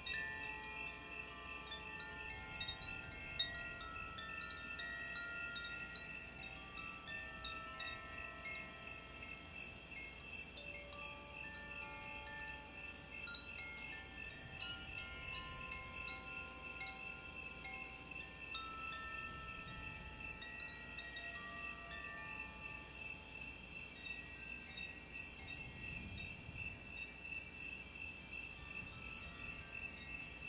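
Hand-held bamboo tube chimes gently swung, their hanging clappers striking scattered, overlapping ringing notes at many pitches in no set rhythm. A steady high tone pulses softly underneath.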